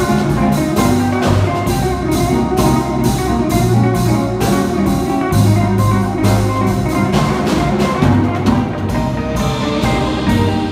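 Small jazz combo playing live: drum kit with a steady cymbal beat, electric bass, electric guitar and keyboard.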